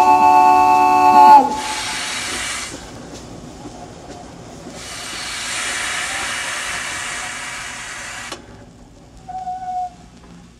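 A steam locomotive's chime whistle sounds a loud, steady chord that cuts off after about a second and a half. Steam then hisses twice: a short burst, then a longer one of about three and a half seconds. A faint short tone follows near the end.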